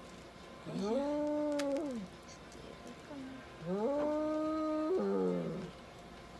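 Cat yowling twice while restrained on an exam table: two long, drawn-out calls about two seconds apart, each rising in pitch, holding, then falling away.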